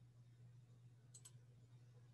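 A single click of a computer's pointer button, heard as two quick ticks about a tenth of a second apart, a little over a second in. Around it is near-silent room tone with a low steady hum.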